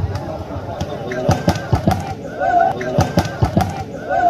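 Volleyballs being struck by hand during a team warm-up: a run of sharp, irregular hits, at times several a second, over the voices of a large crowd.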